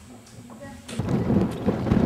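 Quiet indoor room tone, then about a second in a sudden switch to strong wind buffeting the camera microphone, a loud, low, rumbling roar.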